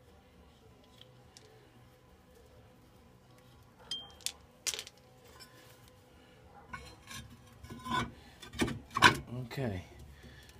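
Steel brake drum being test-fitted over the new rear brake shoes and wheel studs of a 1967 Mustang: a few sharp clicks about four seconds in, then metal clinks and scraping in the last few seconds as the drum goes on.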